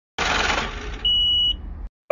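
A short burst of noise, then a single steady high-pitched electronic beep lasting about half a second.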